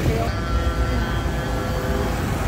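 Diesel tractor engine rumbling low and steady as a tractor drives past, with a few faint steady tones above the rumble.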